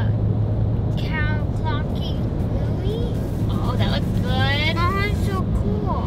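Steady road and engine drone inside a moving car's cabin, with a low hum under it. Voices come over it twice.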